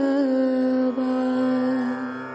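Devotional mantra chant: a voice holds one long note over steady musical accompaniment, with a small dip in pitch about a second in.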